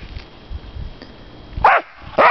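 A dog barks once, a single short, loud bark near the end, over faint low rumbling.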